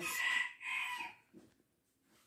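A rooster crowing, the end of its crow fading out about a second in.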